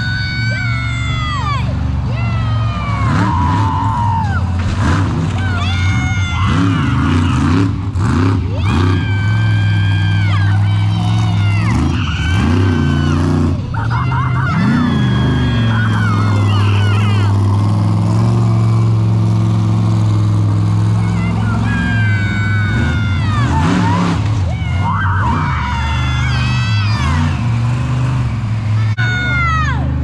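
A vehicle engine idling steadily, a low even drone, with indistinct voices and calls rising and falling over it.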